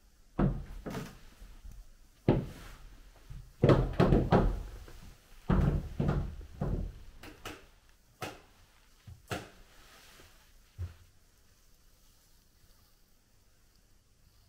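A run of irregular knocks and thumps, about a dozen in all, most of them clustered in the first seven seconds, then a few single knocks spaced further apart.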